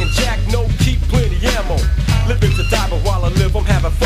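Hip-hop track: rapping over a beat with heavy bass and regular drum hits.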